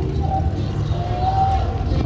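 Low, steady engine rumble of vehicles passing slowly in a parade, with faint held tones above it.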